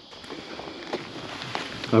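Fabric rustling close to the microphone with a few light clicks and scuffs as a motorcycle riding jacket is handled. A man's voice starts right at the end.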